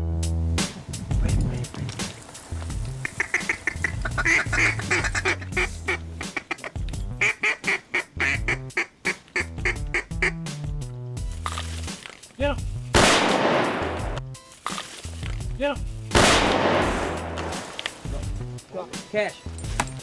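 Duck quacks in quick repeated runs, then two shotgun shots about three seconds apart, each with a short echoing tail.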